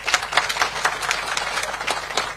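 Audience applauding: a dense run of sharp claps.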